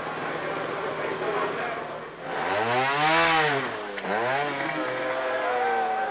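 Two-stroke trials motorcycle engine revved twice in short bursts while climbing a rocky section. The first rev swells and falls back over about a second and a half, and the second is shorter, with voices in the background.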